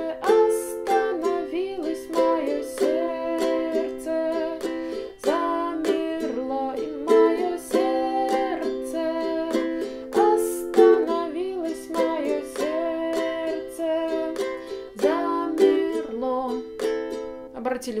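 Ukulele strummed in the six-stroke pattern (down-down-up-up-down-up) through the chorus chords C, F, G and Am, with a woman singing the melody along with it.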